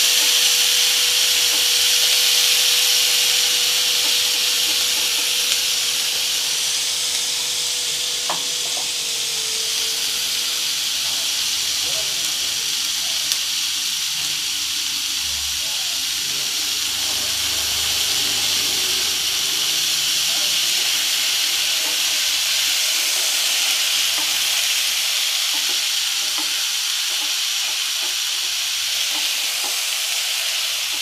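Diced paneer, capsicum and onion sizzling as they are stir-fried in butter in a nonstick pan, with a wooden spatula scraping and turning the pieces. The sizzle is a steady hiss throughout.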